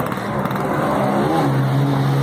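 A motor vehicle passing close by on the street, its engine running with a steady low note that settles in the second half.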